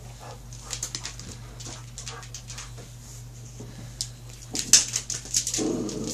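Dogs playing on a hard wooden floor: their claws click and scrabble, with a brief whine near the end.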